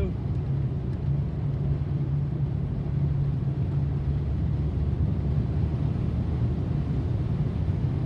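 Car driving through deep floodwater, heard from inside the cabin: a steady low engine and road rumble mixed with the wash of water against the vehicle.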